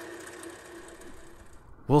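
Wood lathe running steadily with a turning gouge cutting into a spinning bowl blank of blue resin and stabilized maple burl. The sound is faint and cuts off abruptly near the end.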